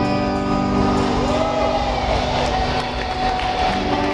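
Live band music: electric guitar and synth notes held and ringing as a sustained chord at the end of the song. A single pitch slides up and back down in the middle of the chord.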